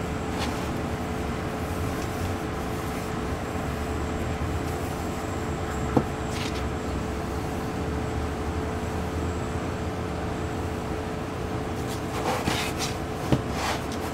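A steady low background hum runs throughout. One sharp click comes about six seconds in, and a few light knocks and rubs come near the end as the wooden handle and head of a homemade mallet are handled and fitted together.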